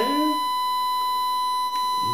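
A steady, high-pitched electronic tone with overtones, one unchanging pitch, with a faint click about three-quarters of the way through.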